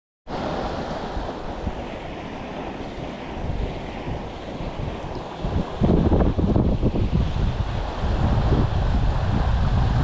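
Steady rush of flowing creek water with wind buffeting the microphone; the buffeting grows heavier and lower about six seconds in.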